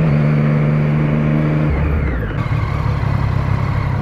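Motorcycle engine running at a steady cruise over wind noise. About two seconds in the throttle rolls off, and the engine note falls and settles lower as the bike slows.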